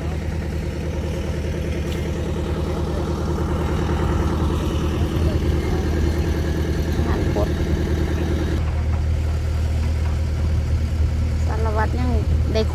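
A heavy engine running steadily at low speed, a continuous low hum. Its higher part drops away about two-thirds of the way through.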